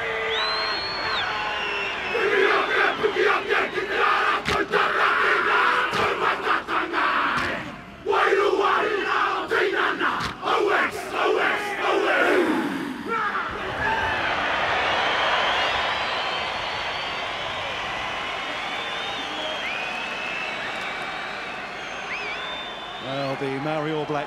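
Māori All Blacks rugby team performing a haka: men shouting the chant in unison, punctuated by rhythmic slaps and stamps, ending in a long falling shout about 13 seconds in. The stadium crowd then cheers and whistles.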